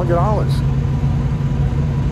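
Steady low rumble of idling engines nearby, with a man's voice briefly at the start.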